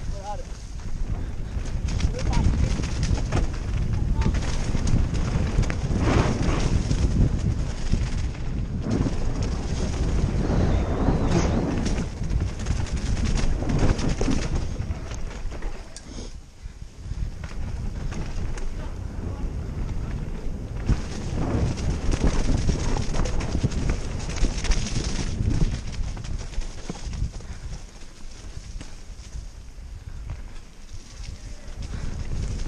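Wind buffeting a helmet-mounted camera and the rattle and knocking of a bike riding fast over a rough dirt trail, surging and easing with a short lull a little past halfway.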